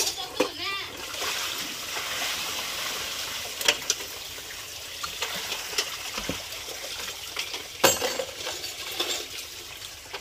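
Dishwater splashing and sloshing in a basin as dishes are washed by hand, with a few sharp clatters of plates and bowls knocking together: one at the start, two close together near the middle, and one later on.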